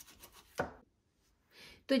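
Kitchen knife slicing raw boneless chicken thigh on a plastic cutting board: a few light cuts, then a sharper knock of the blade against the board about half a second in.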